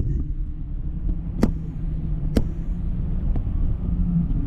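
Wind rumbling steadily against the microphone of a camera high up on a parasail rig, with two sharp clicks about a second and a half in and again a second later.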